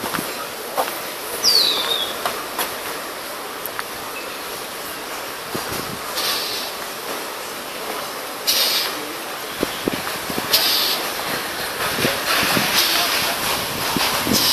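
Outdoor street ambience: a steady background of noise and distant voices, with several brief hissing bursts every couple of seconds and a short falling chirp about one and a half seconds in.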